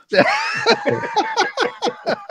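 A man laughing: a drawn-out first laugh, then a run of short chuckles.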